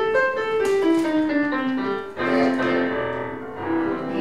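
Casio Privia digital piano playing a short solo passage: a line of notes stepping downward, then a new phrase starting about halfway through.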